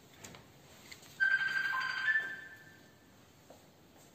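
A short electronic chime, like a phone alert tone, about a second long: one steady high tone, joined partway through by a lower second tone, then fading. A couple of faint clicks come before it.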